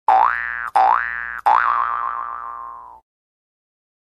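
Cartoon 'boing' sound effect played three times in quick succession, each a springy upward sweep in pitch. The third wobbles and fades out over about a second and a half.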